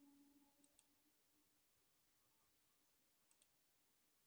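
Near silence with two faint, quick double clicks, one about a second in and one near the end.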